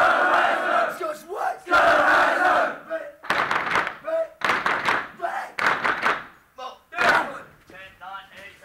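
Loud shouting from a drill instructor and a group of Marine recruits: a string of short yelled commands and replies, one after another.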